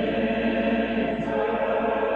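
A choir singing slow, held chords.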